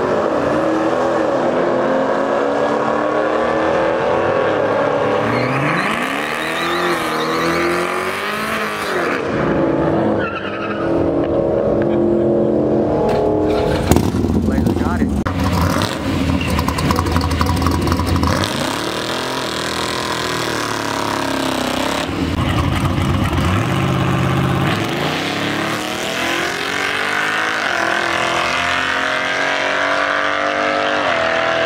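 Drag-racing engines revving up and dropping back several times, with a louder, rough stretch of engine and tyre noise about halfway through.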